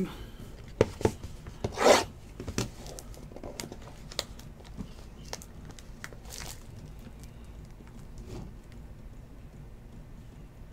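Trading cards and card packaging being handled: cards slid and rubbed against each other and the table, with a few light taps and a louder scraping rustle about two seconds in, and a smaller one around six seconds.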